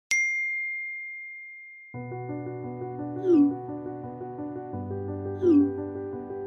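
A single text-message notification ding, one bright tone that rings and fades away over about two seconds. Music with steady chords comes in about two seconds in, with a short, loud falling sound recurring about every two seconds.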